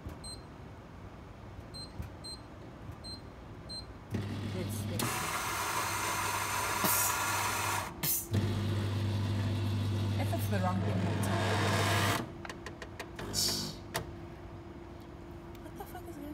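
A bean-to-cup coffee machine making a coffee. It gives several short high beeps, then its motor starts about four seconds in with a steady hum and a coarse grinding noise. After a brief break near eight seconds it hums on steadily while dispensing, and stops about twelve seconds in.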